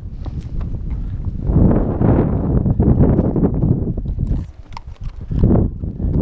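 A saddle mule's hooves clip-clopping at a walk on a rocky granite and gravel trail, with irregular knocks over a steady low rumble. Sharp clicks stand out in a quieter moment about four and a half seconds in.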